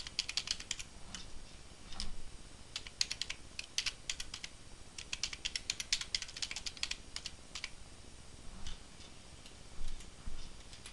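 Typing on a computer keyboard: quick runs of key clicks broken by short pauses, thinning to a few scattered keystrokes in the last couple of seconds.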